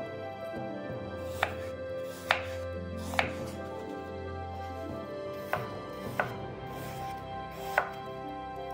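Kitchen knife chopping an apple on a wooden cutting board: six sharp knocks of the blade hitting the board, irregularly spaced.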